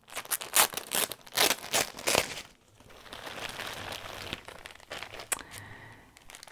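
Clear plastic bag crinkling as it is handled: a quick run of sharp crinkles for the first couple of seconds, then a softer, steadier rustle, with a few sharp crinkles again near the end.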